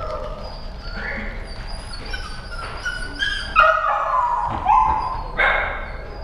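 A dog making a string of high yips and whines, with three louder cries that fall in pitch in the second half.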